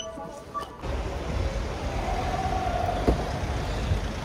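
Shop background music for the first second, then road traffic noise: a steady low vehicle rumble, with a held whine for about a second and a half around the middle.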